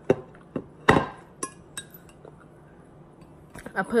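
A plate and fork being handled and set down on a table: a handful of short clinks and knocks in the first two seconds, the loudest about a second in.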